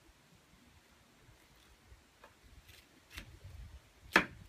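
Mostly near silence, with a few faint knocks in the second half: a kitchen knife cutting through pineapple and striking the cutting board.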